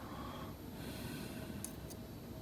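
Faint breathing close to the microphone, with two light ticks near the end as steel tweezers handle a small lock pin spring.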